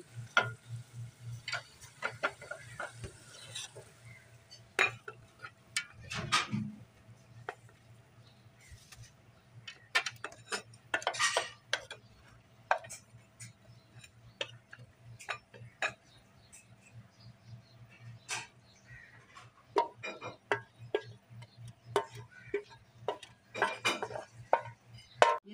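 A ladle scraping and knocking against a metal cooking pot as thick mutton curry is stirred and then served out onto a plate: scattered clicks, clinks and scrapes throughout, over a low steady hum.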